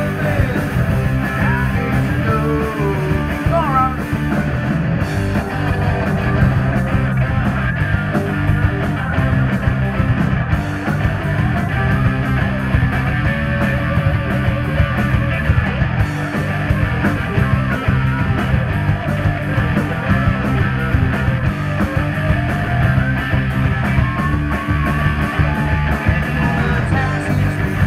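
A live punk rock band playing: distorted electric guitars over a Ludwig drum kit with a steady driving beat and cymbals, with a wavering lead line heard now and then.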